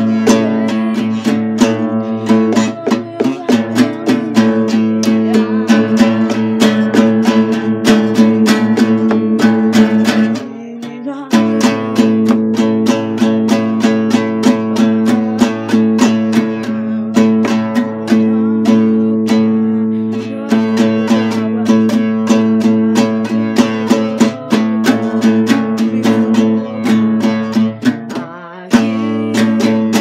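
Acoustic guitar strummed in a steady rhythm, with short breaks about ten seconds in and again near the end.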